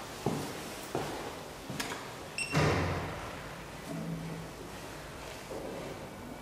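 Footsteps on a hard floor, then about two and a half seconds in a heavy door bangs shut with a metallic ring that dies away over about half a second, the loudest sound here. A few softer knocks follow.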